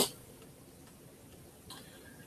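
A pause in speech: quiet room tone with a few faint ticks.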